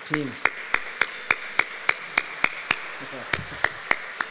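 Applause: one person's hand claps, sharp and close, at about three or four a second, over a softer wash of clapping from the audience.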